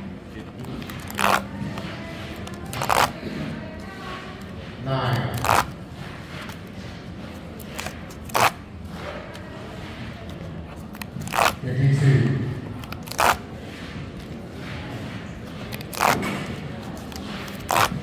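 Paper pull-tab tickets being torn open by hand, a short sharp rip for each tab, about eight of them at uneven intervals.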